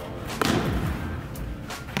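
A volleyball struck hard by hand in an attack, a sharp smack about half a second in, followed by a lighter slap near the end.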